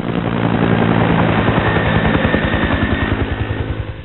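Helicopter sound effect: rotor blades chopping in a fast, even beat over a steady engine hum. It sounds dull, with no high treble, and drops a little in level near the end.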